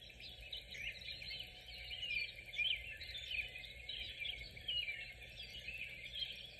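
Small birds chirping continuously in quick, overlapping high calls, faint, over a low steady hum.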